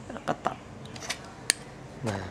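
Side cutters snipping a thin jumper wire: one sharp metallic snip with a brief ring about one and a half seconds in, after a faint click.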